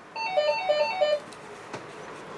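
Phone ringtone: a quick descending three-note melody played three times in about a second, then stopping, a call left to ring unanswered.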